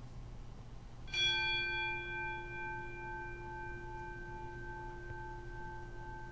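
A bell struck once about a second in, its tone ringing on and slowly fading, with a slight waver. It marks the elevation of the consecrated bread during the Eucharistic prayer.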